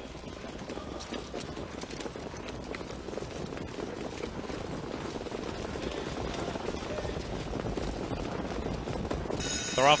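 Racetrack sound of a trotting field and the mobile starting gate truck closing on the start: a steady rumble of hooves, sulky wheels and the truck, growing gradually louder.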